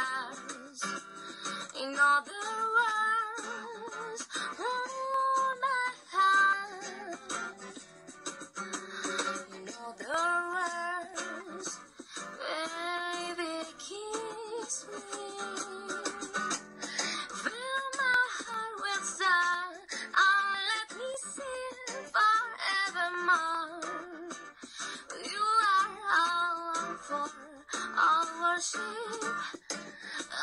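A woman sings a ballad-like song, accompanied by acoustic guitar. The sound is thin, with almost no bass.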